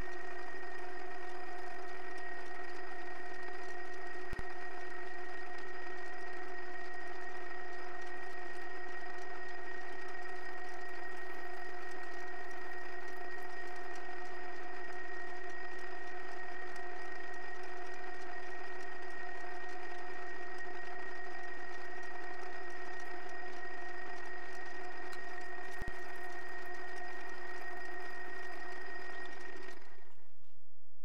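Metal lathe running at a steady speed with a constant whine, its spindle turning steel bar stock during machining. The sound drops out briefly twice, once early and once near the end.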